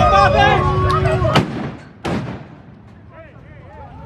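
Shouting crowd voices, then two loud bangs, the second about two-thirds of a second after the first, after which only faint voices remain.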